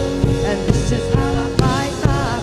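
Live worship band playing: a woman singing over keyboard and electric guitar, with a drum kit keeping a steady beat of about two hits a second.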